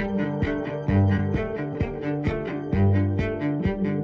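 Cello music: low notes held beneath a steady run of shorter notes, a few each second.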